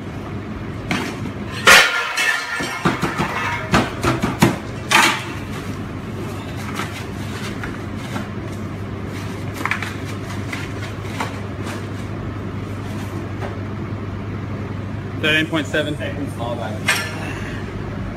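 Sharp clatters and knocks of a metal pizza pan, utensils and cardboard pizza boxes being handled fast, loudest in the first five seconds, over a steady low hum of kitchen equipment.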